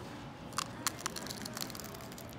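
Biting into a taco: a quick run of sharp crunches and crackles, starting about half a second in, over steady room noise.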